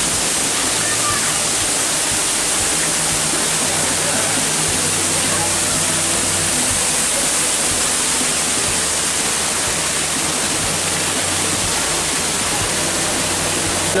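A waterfall running steadily, a constant rush of falling water with no breaks.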